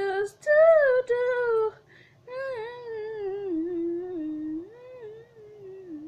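A female voice singing unaccompanied, holding and bending a loud note for about a second and a half. Then a quick breath and softer, wordless humming that slides up and down in pitch and fades.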